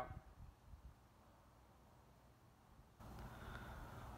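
Near silence: faint room tone, stepping up suddenly to a louder steady hiss and low hum about three seconds in.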